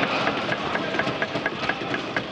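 Members of the house thumping their wooden desks in approval, the Lok Sabha's form of applause: a rapid, even run of knocks about four a second over a murmur of voices.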